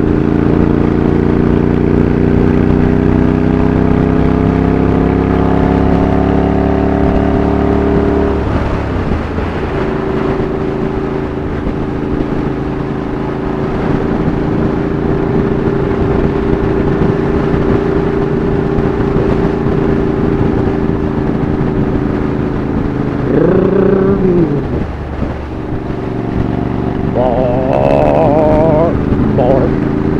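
Motorcycle engine under way, picked up by a helmet-mounted camera's mic. Its pitch climbs slowly for about eight seconds, then drops and holds at a steady cruise. About two-thirds of the way through it briefly dips and rises again.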